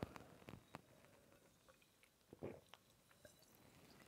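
Near silence with faint mouth and swallowing sounds of a person drinking from a glass: a few soft clicks early on and a quiet gulp about two and a half seconds in.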